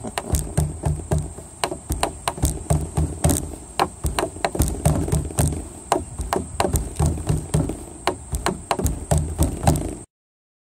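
Rapid, irregular knocking and tapping, several sharp strikes a second with low thuds under them, over a steady high-pitched buzz. The sound cuts off suddenly at the end.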